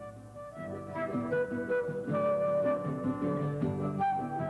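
Instrumental background music: a melody of held notes over a line of shorter notes.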